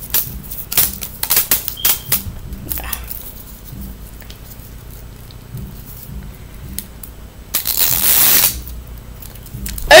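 Plastic wrapping of an L.O.L. Surprise ball being handled and peeled, with a quick run of sharp crackles and clicks in the first few seconds. About eight seconds in there is a rustling burst lasting about a second.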